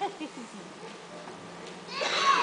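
A few short, faint, high-pitched vocal squeaks at the start, like a young child's whimper, then the quiet background of a hall.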